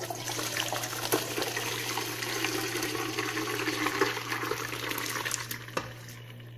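Water running or pouring into a vessel in a steady, splashy stream for nearly six seconds, then stopping shortly before the end.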